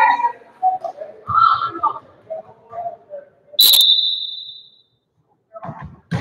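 A single short, shrill blast of a referee's whistle about three and a half seconds in, ringing in the gym as it fades. Players are set in formation, so it is the whistle that authorizes the serve.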